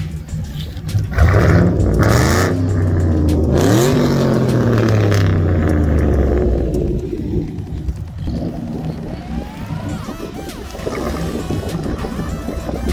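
Pontiac G8 GT's 6.0-litre V8 with Kooks headers at wide open throttle, the car accelerating hard. The exhaust note rises in pitch as it revs, stays loud for several seconds, then fades away as the car pulls off.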